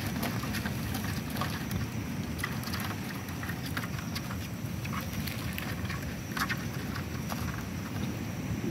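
Live crabs in a plastic bucket, their shells and claws clicking and scraping against one another and the bucket wall as a hand rummages among them; irregular small clicks over a steady low background noise.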